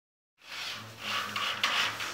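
Corded screw gun driving a screw through a galvanized steel drywall stud into the steel main channel, the screw grinding into the sheet metal with a rasping sound that comes in uneven surges, strongest near the end.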